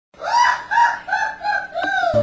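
A rooster crowing: one cock-a-doodle-doo of about five pitched syllables, the last drawn out and falling in pitch.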